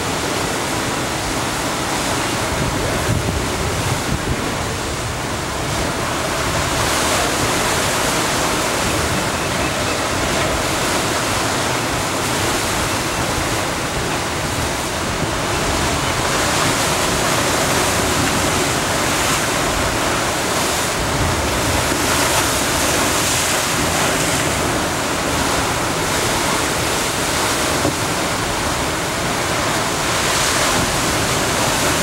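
Ocean surf breaking and washing over rocks, a continuous loud rush that swells and eases slowly with the waves.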